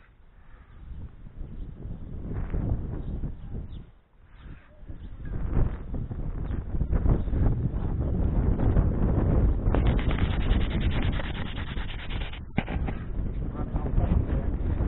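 Rough rumbling and rubbing noise on the microphone, building up from about five seconds in. A stretch of rapid fine ticking runs from about ten seconds in and cuts off suddenly a couple of seconds later.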